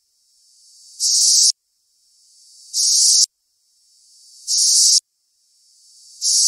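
Reversed high-pitched noise sample from a trap sound-effect pack: a hiss that swells up, jumps to a loud burst and cuts off suddenly. It plays three times, about every second and three quarters, and a fourth swell begins near the end.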